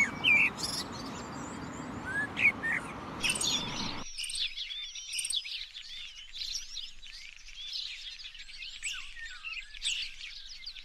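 Common blackbird singing a few loud, fluty notes over a steady low background noise. About four seconds in, the background cuts off abruptly and a busy chorus of high chirps and twitters from small songbirds takes over.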